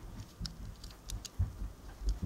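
Handling noise of a small die-cast toy car being turned over in the fingers: a few light clicks and rubbing, with some low bumps.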